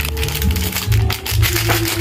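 Plastic coffee sachet crinkling as it is handled, in many short crackles, over background music with a steady low bass line.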